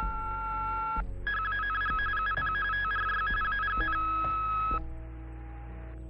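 Telephone off-hook warning tone, the loud 'howler' chord of several high tones pulsing rapidly on and off, recorded on an answering-machine tape after the phone was left off the hook. A steady two-note tone comes first for about a second, and the howler cuts off abruptly near five seconds in.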